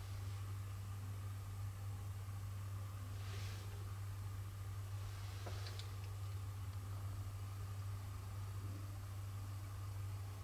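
Quiet room tone with a steady low hum. A faint rustle about three seconds in and a couple of faint clicks a little after five seconds come from a phone being picked up and handled.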